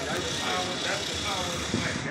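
Indistinct voices talking over steady street noise.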